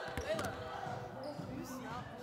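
A basketball bouncing on a gym floor, with players' voices in the gym.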